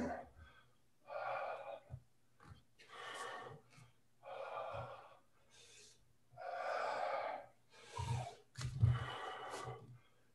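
A man breathing audibly in and out while exercising, about six breaths each roughly a second long, picked up by a video-call microphone.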